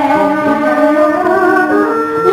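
Traditional Vietnamese ceremonial music for a ritual offering dance: an instrumental melody that slides up and down in pitch over held notes.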